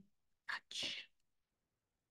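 A short, quiet breathy sound from a woman's mouth and nose, two quick bursts about a second in, much softer than her speech.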